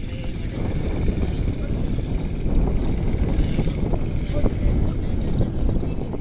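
Wind rumbling on the microphone, with faint scattered splashes from a pair of oxen dragging a plough through flooded paddy mud.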